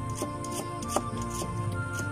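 A large knife chopping a red onion on a wooden chopping block: about five sharp cuts, the one about a second in the loudest, heard over background music.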